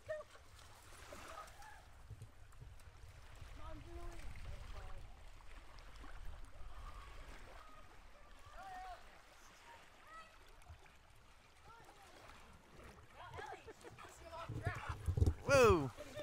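Wind rumbling on the microphone at the lake shore, with faint distant voices. About 15 seconds in, a loud voice-like call falls in pitch.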